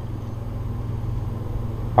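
Steady low background hum, rising slightly in level, with no other sound.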